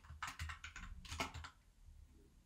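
Typing on a computer keyboard: a quick run of faint key clicks that trails off about a second and a half in.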